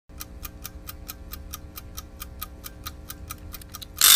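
Regular ticking, about four to five ticks a second, coming faster just before the end, over a faint steady low drone.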